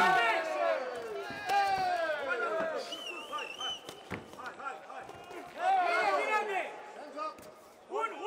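Indistinct shouting voices in a fight arena, with a single sharp thud of a blow landing about four seconds in. A short warbling whistle comes just before it.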